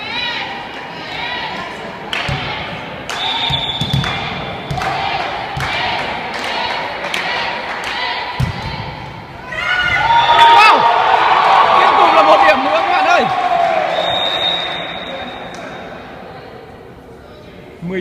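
Volleyballs being hit and bouncing on a sports-hall floor, a string of sharp smacks that ring in the big hall. From about ten seconds in, players' voices shout loudly during a rally, then die away.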